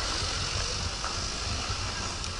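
Steady wind noise on the microphone of a camera carried on a selfie stick outdoors: a low rumble with a hiss above it.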